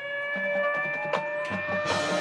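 Marching band playing a sustained chord, with two short percussion hits, one about a second in and one near the end.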